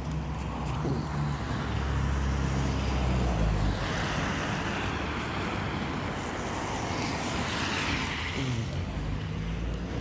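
Road traffic: a vehicle engine running with a low steady hum, and a louder rushing noise for about five seconds in the middle.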